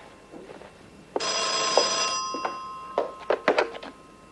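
A 1930s desk telephone's bell ringing once, starting about a second in and lasting about a second, then fading away. Several sharp knocks follow in the second half.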